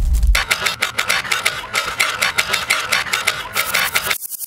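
Sound-design effects for an animated graphic: a deep rumble that cuts off about a third of a second in, followed by a rapid, even run of sharp digital clicks and ticks as text labels flicker onto the screen.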